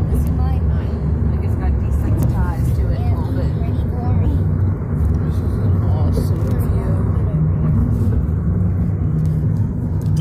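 Steady low road and engine rumble inside the cabin of a moving car, with faint voices talking underneath.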